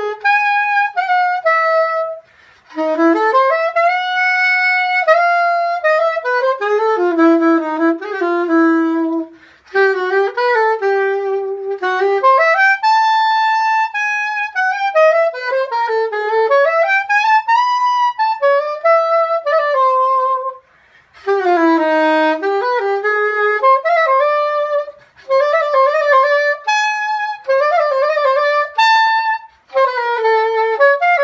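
Soprano saxophone playing an unaccompanied jazz melody, one line of notes that rise and fall in phrases separated by brief breath pauses.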